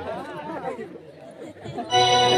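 Voices chattering in a short lull between music, quieter than the music around it; the band's steady held notes come back in just at the end.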